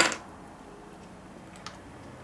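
Quiet room tone with a faint low hum, broken by one small tick about one and a half seconds in.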